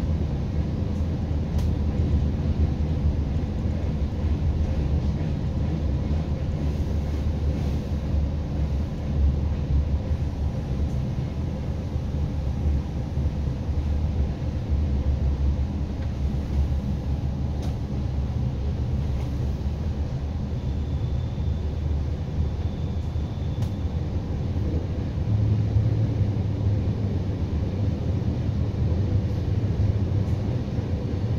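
Steady low rumble of a passenger train running along the track, heard from inside the carriage, with a few faint clicks and a low hum that grows louder in the last few seconds.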